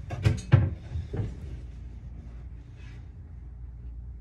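Kitchen cabinet doors being opened, three or four sharp knocks in quick succession in the first second and a half.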